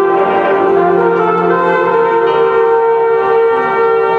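Marching band holding a loud, sustained chord with bell-like ringing tones.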